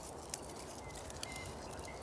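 Quiet outdoor ambience with faint bird chirps and a few light cracks as a dried nettle stem's inner woody core is snapped off by hand.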